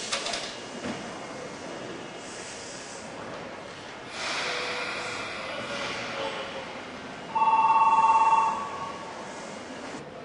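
Electric departure bell on a subway platform ringing for about a second, a rapid trilling tone, signalling that the train's doors are about to close. Under it is a wash of station and train noise that swells about four seconds in.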